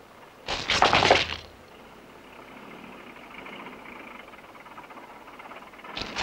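A man's short, loud, breathy laugh about half a second in, then a faint steady hiss.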